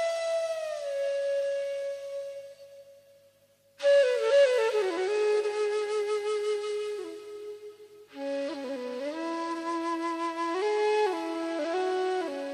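Instrumental ghazal music led by a flute: a long held note dies away, and after a brief hush a new melody starts, with a second, lower line joining about eight seconds in.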